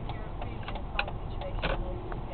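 Steady low road and engine rumble heard from inside a moving car, with several light clicks scattered unevenly through it.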